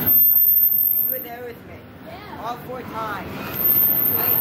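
Double-stack intermodal freight train rolling past close by, with the rumble and clatter of its steel wheels on the rail. It is loudest in the first second, as a set of wheels passes, then quieter.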